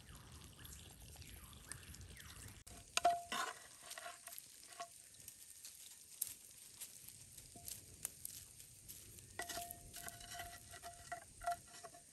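Butter faintly sizzling under ham-and-cheese bread rolls frying in a square grill pan. Then a metal knife blade clinks and scrapes on the emptied pan, the pan ringing with a steady metallic note: once about three seconds in, and again in a longer spell from about nine seconds in.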